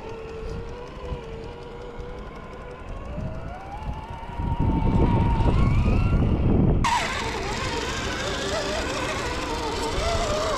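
Electric motors and gearboxes of 1:10 scale RC crawlers whining. The Traxxas TRX-4's whine holds steady, then rises in pitch as it speeds up, with a loud low rumble under it. About seven seconds in, the sound cuts suddenly to another crawler's whine, which wavers in pitch.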